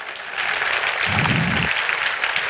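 Audience applauding at the end of a talk; the clapping swells in the first half second and then holds steady.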